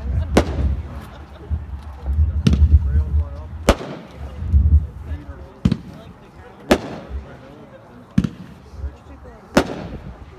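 T-Sky 'Smack Down' 200-gram consumer firework cake firing: about seven sharp bangs, unevenly spaced one to two seconds apart, with a low rumble under the first half.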